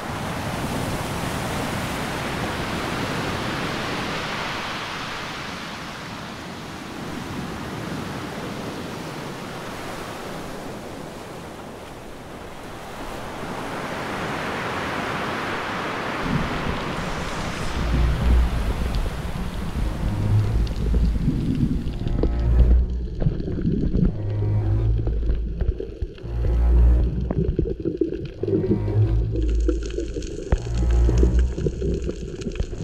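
Ocean surf washing over a reef, swelling up twice and falling away. About halfway through, music with a heavy bass beat takes over.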